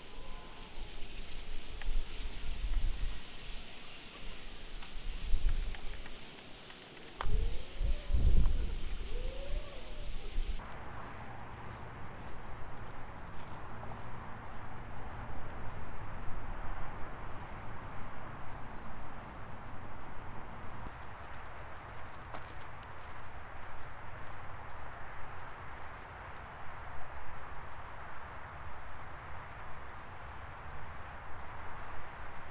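Thumps and gear handling at a car's open rear hatch for the first ten seconds, with a couple of short squeaks. Then steady footsteps walking outdoors over a steady outdoor hiss.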